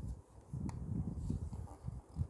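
Origami paper being folded and pressed flat by hand on a board: a faint, uneven rustling and rubbing, with one light tap about two-thirds of a second in.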